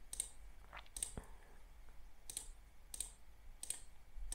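Five faint, separate computer mouse clicks, about a second apart, as collapse arrows in a design program's layers panel are clicked one after another.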